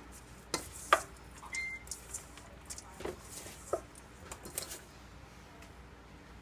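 A plastic spoon stirring shredded raw butternut squash in a stainless steel mixing bowl: soft scraping with a few sharp knocks of the spoon against the bowl's side.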